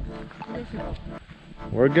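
Background music with steady held notes, and a man's voice coming in near the end.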